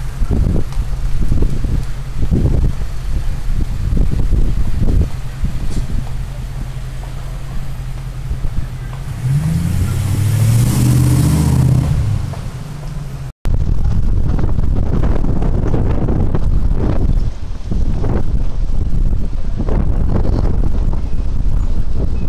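Street noise with heavy wind rumble buffeting the microphone. A car drives past about ten seconds in, its engine note rising and falling with a hiss of tyres.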